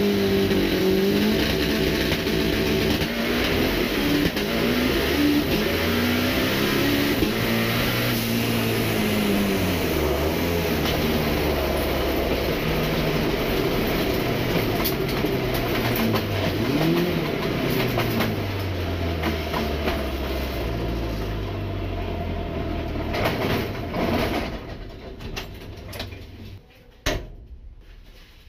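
Turbocharged 1500-horsepower Chevette drag car's engine heard from inside the cockpit, running hard, its pitch rising and dropping with throttle and gear changes. It fades as the car slows near the end.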